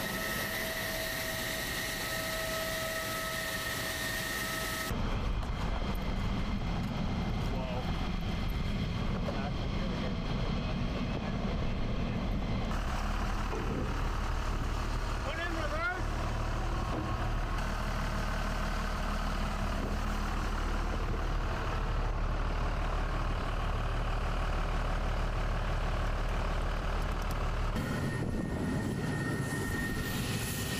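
Jet flight-line noise around F-16 fighters. For about five seconds there is a steady whine with several high tones, then a low, steady engine rumble from aircraft and ground equipment. The sound changes abruptly twice more.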